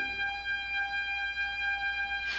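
A trumpet holding one long, steady high note at the close of a brass fanfare.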